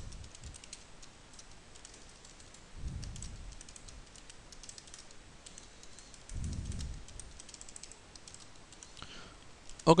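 Typing on a computer keyboard: irregular runs of key clicks, with two brief low, soft sounds about three and six and a half seconds in.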